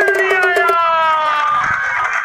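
Cartoon transition sound effect: a long pitched tone that slides slowly downward, over fast rhythmic percussive clicking that stops under a second in. A low thump comes just before the end.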